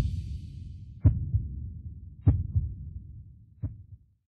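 Heartbeat sound effect: low double thumps, lub-dub, about every 1.2 seconds, growing fainter and slightly slower until they stop.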